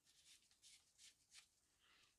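Very faint: four short rasping rubs, a screw cap being twisted back onto a plastic Brasso bottle by nitrile-gloved hands.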